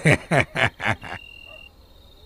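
Frogs croaking in a quick run of about four calls, roughly four a second, followed by a brief steady high-pitched insect trill like a cricket's.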